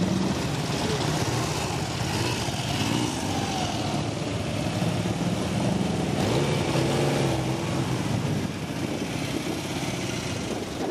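Classic motorcycle engines running at idle, a steady low engine note throughout, with voices talking over it.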